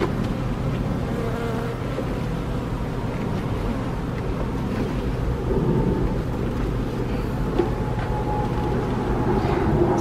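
A crowd of honeybees buzzing over the open frames of a hive: a steady, even hum with a faintly wavering pitch.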